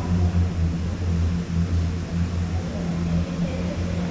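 Conveyor-belt lift of a tubing run carrying riders uphill inside a corrugated-metal tunnel: a steady low mechanical hum with a hiss over it.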